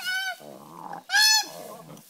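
Female koala giving distress calls while being handled: two short, loud, high cries that rise and fall in pitch, one at the start and one about a second in, with a lower, rasping sound between them.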